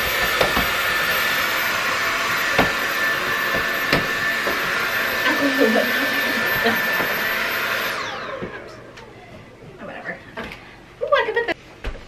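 Cordless stick vacuum running steadily with a high whine, then switched off about eight seconds in, its motor winding down.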